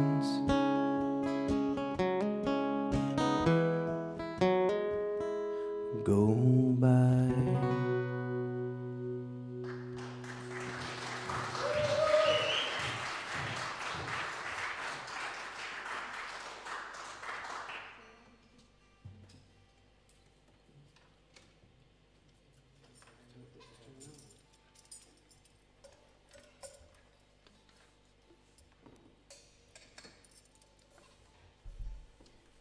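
Acoustic guitar playing the closing notes of a live country song, a final strum ringing out, followed by about eight seconds of audience applause with a whoop. After that only faint clicks and knocks from the stage.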